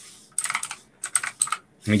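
Typing on a computer keyboard: a quick run of key clicks, a brief pause, then a few more clicks.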